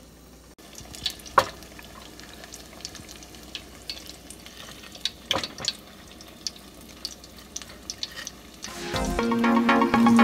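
Breaded onion ring frying in hot vegetable oil: a steady sizzle with scattered crackles and pops, two louder pops about one and a half and five seconds in. Background music comes in near the end.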